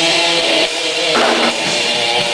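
Live rock band playing loud: electric guitar chords over a drum kit.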